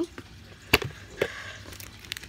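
Handling knocks from a small plastic food container: one sharp, loud knock under a second in and a softer one about half a second later.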